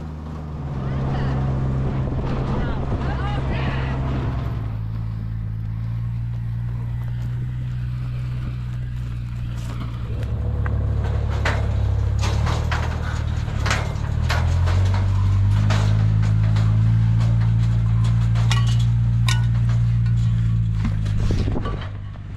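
A low, steady engine drone from a vehicle, its pitch shifting up and down a few times. Faint voices sound early on and scattered sharp clicks and knocks come later.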